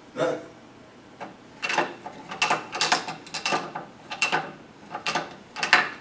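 Wooden tumbling-clown ladder toy: a painted wooden figure flipping down the rungs of a wooden ladder, clacking against each rung in a run of about ten irregular wooden clicks.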